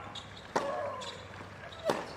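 Tennis ball bounced on the hard court by the server before her serve: a sharp bounce about half a second in and another near the end.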